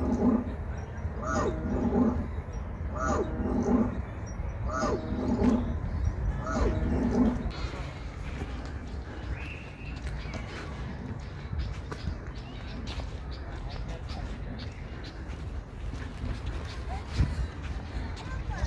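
Animatronic dinosaur's loudspeaker playing a looped growling roar, the same call repeated five times about every second and a half, then stopping about seven seconds in. Steady low wind-like background noise remains.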